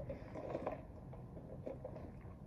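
Faint sips of iced coffee through a plastic straw in the first second, over a steady low background hum.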